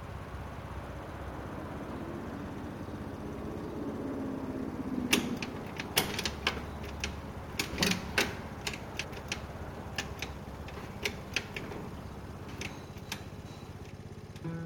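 A dozen or so sharp, irregular clicks and taps from a rider handling a scooter's controls, starting about five seconds in over a steady low hum.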